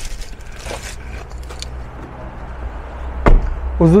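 Someone getting out of a car, with small clicks and rustles, then the car's driver's door shut about three seconds in: one sharp thump, the loudest sound here. A steady low hum runs underneath.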